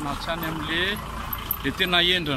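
Mostly speech: a voice talking over a steady background of street traffic noise.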